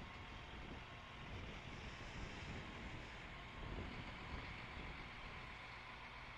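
A bucket truck's engine runs faintly and low as the truck drives off slowly.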